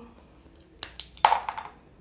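A Sakura Pigma Micron 005 fineliner being uncapped: a few light clicks, then one sharp snap of the cap coming off about a second and a quarter in, and small taps as the cap is set down on a plastic cutting mat.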